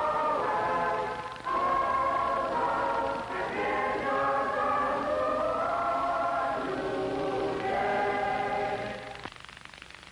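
A mixed chorus of boys' and girls' voices singing together in harmony. There is a short break about a second and a half in, and the singing fades away near the end.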